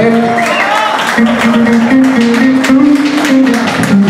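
Electric guitars played loosely, with held notes climbing in small steps over repeated short picked strokes.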